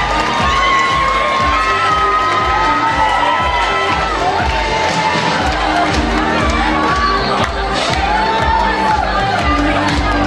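Audience cheering over music with a steady beat.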